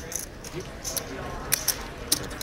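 Clay poker chips clicking as a player handles his stack: a few separate sharp clicks, with faint voices underneath.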